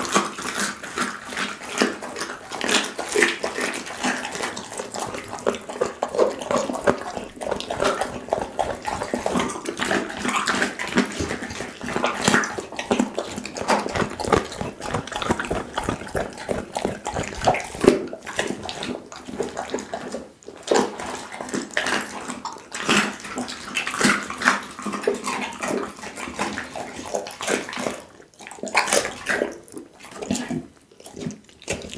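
Pit bull chewing a raw duck head close to a condenser microphone: wet smacking and crunching with many irregular clicks throughout. The sound thins out near the end.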